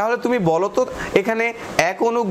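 A man speaking continuously in a small room, lecturing.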